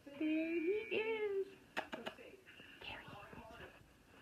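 A person's high-pitched, sing-song voice for the first second and a half, then a few sharp clicks about two seconds in.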